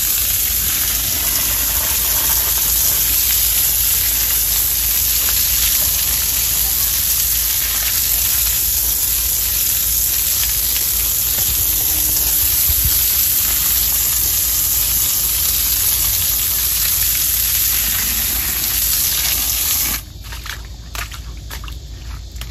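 Garden hose spraying water onto concrete stepping stones, washing play sand down into the joints between them: a steady hiss of running water that stops near the end.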